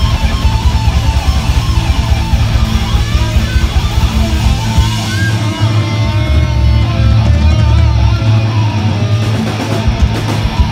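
Loud live heavy rock band playing electric guitars, bass guitar and drum kit. Fast, dense drumming under strummed guitar for the first half, then held guitar and bass notes with the rapid beat dropping away from about five seconds in, until the drums return at the end.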